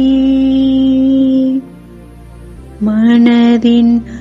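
A woman intoning a Tamil rosary prayer almost on one held note over a soft, steady instrumental drone. The voice breaks off for about a second in the middle, leaving only the drone, then comes back in short syllables.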